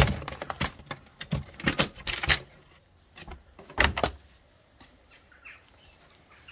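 A Porsche Boxster 986 engine cover is being lifted out of its opening. A quick run of clicks, knocks and scrapes comes in the first couple of seconds, with louder thunks at the start, about two seconds in and about four seconds in, then it goes quieter.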